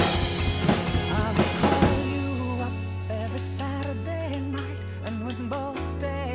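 Pearl drum kit and Sabian cymbals played along with a recorded pop song, busy hits for about two seconds. The drums then drop out, leaving the song's male singing voice over a steady bass.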